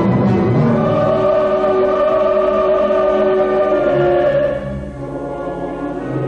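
Opera chorus singing long held chords. The sound softens about four and a half seconds in, then swells again.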